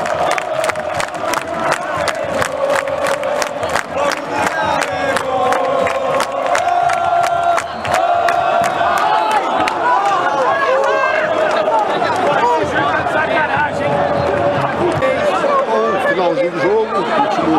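Football crowd of Flamengo supporters singing a terrace chant together, with steady hand-clapping, about three claps a second, through the first half. After that the clapping fades out and the singing and shouting carry on.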